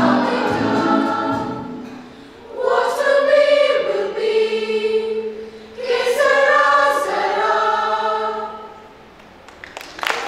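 Children's choir of mixed boys' and girls' voices singing long held chords in three phrases: the closing notes of the song, the last chord dying away about nine seconds in.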